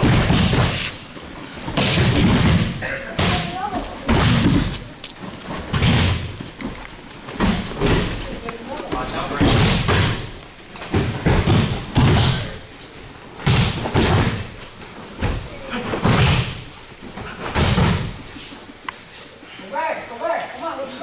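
Repeated heavy thuds of judoka landing on judo mats, about one every second or two, in a large hall with some echo.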